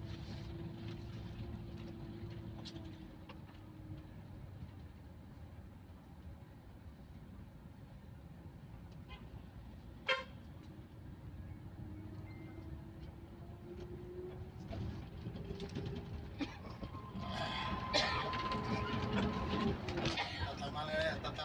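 Passenger bus engine and road noise heard from inside the cabin while driving. The engine note rises in pitch in the second half, there is a single sharp click about ten seconds in, and the noise grows louder near the end.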